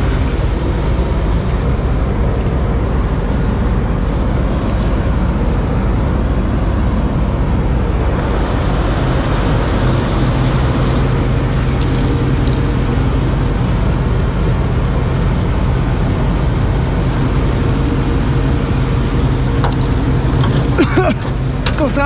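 New Holland CX combine harvester engine running steadily. About eight seconds in, a brief hiss of aerosol lubricant spray sounds over it.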